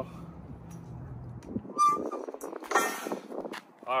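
A man getting down off metal parallel dip bars: a brief metallic clink about two seconds in, then a short, loud vocal exclamation, over a low outdoor rumble.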